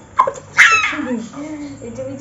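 A sudden loud, high vocal burst about half a second in that falls in pitch, followed by a voice talking.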